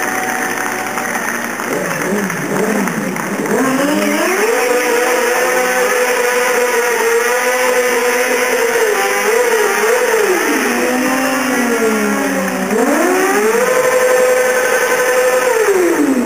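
Sport motorcycle engine revved hard and held at high revs for a burnout, the rear tyre spinning on the tarmac. The revs climb over a couple of seconds and hold, dip about two-thirds of the way through, then climb and hold again.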